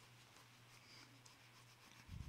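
Faint scratching of a colored pencil shading on paper, over a low steady hum.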